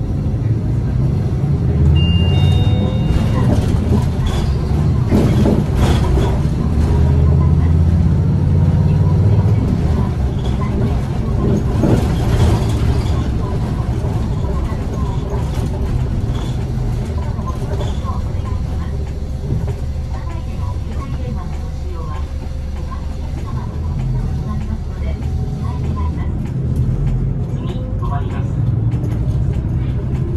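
City bus engine and road noise heard from the front of the passenger cabin while the bus drives, a steady low rumble. A brief high chime sounds about two seconds in, and a voice speaks over the running noise.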